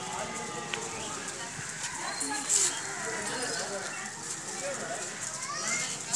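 Background voices of children and adults, quiet and without clear words, with a brief hiss about two and a half seconds in.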